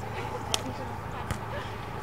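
Faint distant voices over steady outdoor background noise, with two sharp knocks, about half a second and just over a second in.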